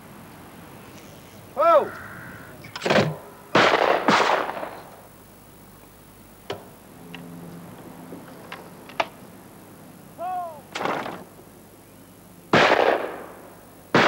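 Shotgun shots at clay pigeon shooting: two or three about three to four seconds in and two more near the end, each with a ringing tail. In between come a few sharp clicks as a cartridge is loaded into a break-action shotgun.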